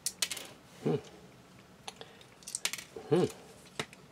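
Small plastic model-kit parts clicking and tapping against each other as they are handled and pushed into place by hand, a few sharp clicks scattered through. A man murmurs 'hmm' twice, the second time the loudest sound.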